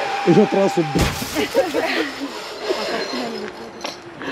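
People's voices talking and calling out, with a single sharp knock about a second in.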